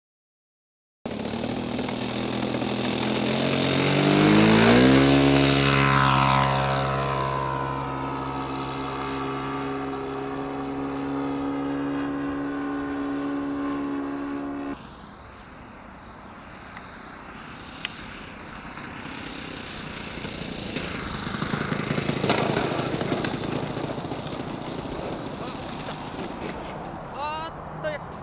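Radio-controlled Ju 87 Stuka scale model's engine and propeller in flight, its pitch dropping sharply as it passes about four to six seconds in, then holding steady. After an abrupt cut about halfway through, it is fainter and swells again a few seconds before the end as the plane comes in low to land.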